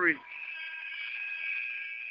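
Steady background sound from the arena in the broadcast feed: several sustained high tones held over a faint hiss, with no low end.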